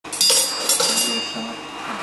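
A few light metal-on-metal clinks on a steel anvil in the first second, the first the loudest, each leaving a high ringing that slowly fades.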